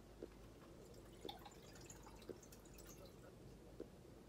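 Near silence: room hiss with a few faint, light clicks, roughly one a second, from small handling of kitchen things.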